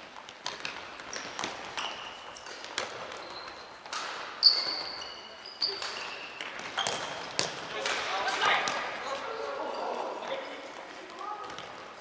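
Futsal play on a wooden sports-hall floor: the ball being kicked and bouncing in sharp knocks, a short shoe squeak about four and a half seconds in, and players calling out from about halfway through, all echoing in the big hall.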